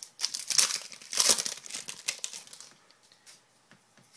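Foil wrapper of a Crown Royale hockey card pack being torn open and crinkled by hand, a run of loud crinkling bursts over the first two and a half seconds. Then a few faint clicks and rustles as the cards come out.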